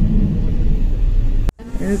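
Low road rumble inside a moving car's cabin, cut off abruptly about one and a half seconds in; music with steady held notes starts near the end.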